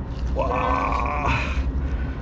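A man's drawn-out exclamation of "wow", held at a steady pitch for about a second, starting about half a second in, over a steady low rumble.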